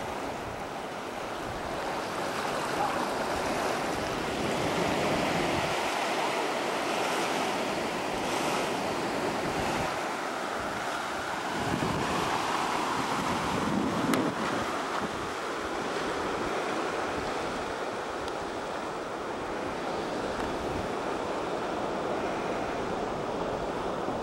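Ocean surf washing in, rising and falling in slow swells, with wind rumbling on the microphone.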